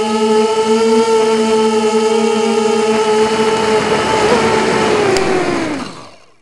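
QAV250 quadcopter's brushless motors (Lumenier 2000 kV, Gemfan 5x3 props) whining at a steady pitch. About four seconds in, the pitch wobbles and then falls as the quad comes down into the grass stubble and the motors spin down, the sound fading out at the very end.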